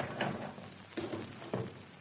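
Radio-drama sound effect of a door being opened, with two short knocks or clicks about a second and a second and a half in.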